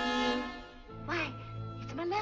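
Film orchestra holding a loud chord that fades out about half a second in. It leaves a low held note under short, gliding cartoon-voice gasps and murmurs.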